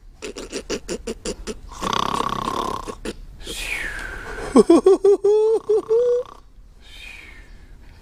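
A person doing a comic pretend snore: a rattling snore, a long breath in, a falling whistle on the way out, then a wavering voiced snore.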